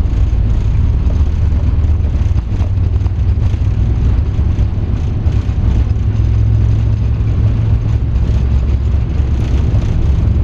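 Boeing 777 freighter's twin GE90 engines at takeoff thrust during the takeoff roll, heard from inside the cockpit: a loud, steady, deep rumble of engines and runway that does not let up.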